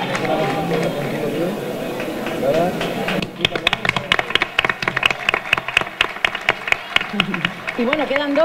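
Crowd of people talking and calling out, then from about three seconds in, an audience clapping: sharp, separate claps several times a second.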